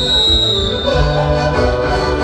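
Live Andean folk music accompanying a massed autochthonous dance: a steady melody of held notes over a low beat.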